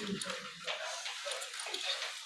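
Faint, scattered snatches of voices away from the microphone.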